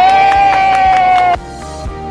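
A group of women cheering, one long held shout on top, over background music with a steady beat; the cheer cuts off suddenly a little over a second in, leaving only the music.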